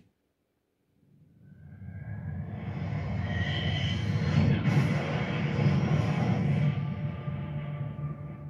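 Film trailer soundtrack: after about a second of silence, a fighter jet's engine roar swells up as the jet comes in low, and holds loud before easing off near the end, with music underneath.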